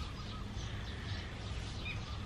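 Outdoor background in a pause between words: a steady low rumble with faint distant bird calls.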